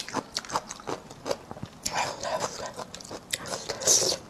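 Close-up crisp chewing of pickled bamboo shoot strips, a rapid run of short crunches several times a second, with a louder, hissy sound near the end.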